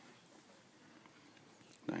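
Quiet room tone with no distinct sound, until a man's voice starts right at the end.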